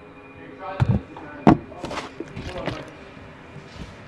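A sharp knock about a second and a half in, among softer bumps and rustling from someone moving about and handling things in a cramped space, with a brief voice just before it.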